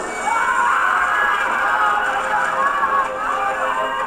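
Many people screaming at once, overlapping frightened voices of airliner passengers in a TV drama's soundtrack.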